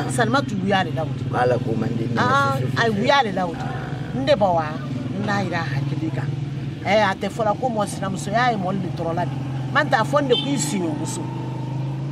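Two women in conversation, speaking Malinké, over a steady low hum like a distant engine.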